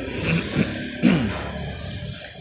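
A woman laughing briefly: two short laughs, each falling in pitch, about half a second and a second in.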